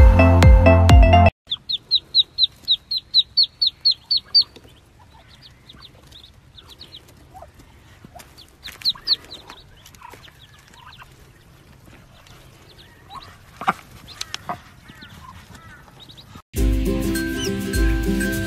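Ducklings peeping: a quick run of about a dozen high, evenly spaced peeps, then fainter scattered peeps and small knocks. Music plays for the first second or so and comes back loudly near the end.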